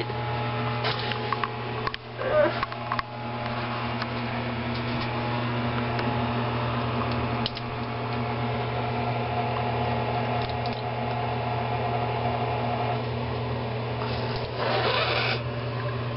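Nasal rinse with a neti pot: saline trickling through the nose and spattering into a sink, with a few short breaths or snorts, over a steady low hum.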